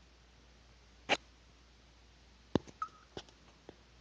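Quiet room tone broken by a few brief clicks: one sharper click about a second in, then a cluster of small clicks with a very short squeak in the second half.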